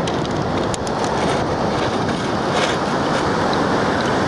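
Pacific Ocean surf breaking and washing up the sand, a steady rush of waves.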